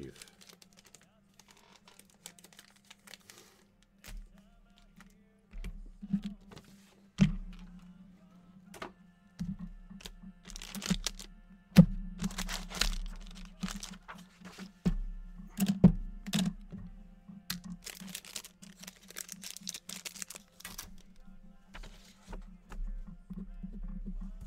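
Trading card packs and cards being handled on a table: scattered knocks and taps, with several bursts of rustling and crinkling from the pack wrappers, over a steady low hum.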